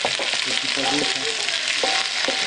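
Sliced leeks sizzling in a frying pan as they are stirred, a steady hiss of frying.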